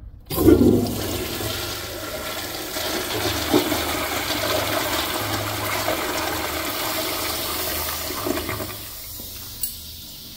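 Vintage Crane commercial toilet with a flushometer valve flushing: a sudden rush of water starts just after the beginning, runs strong and steady for about eight seconds, then dies down. A sharp click comes near the end.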